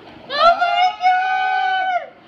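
A high-pitched voice holds one long, drawn-out exclamation at a nearly steady pitch. It starts about half a second in and lasts about a second and a half.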